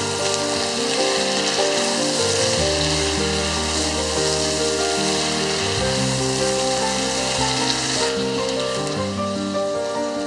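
Chicken drumsticks and ginger sizzling as they sauté in a pot, stirred with a wooden spatula. Background music with changing notes plays over the steady sizzle.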